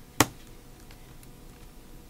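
A single sharp computer-keyboard keystroke about a fifth of a second in, followed by a few faint key taps.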